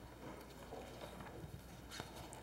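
Faint rustling and soft taps of paper pages being turned over by hand, with a brief click near the end.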